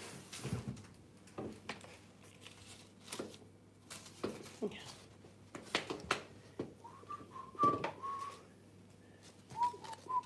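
A person whistling softly, a short slightly rising note held for about a second late on and a shorter one near the end, over scattered light clicks and taps of small objects being handled.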